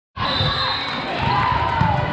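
A ball bouncing on a hard gym floor, with voices calling and echoing around a large sports hall.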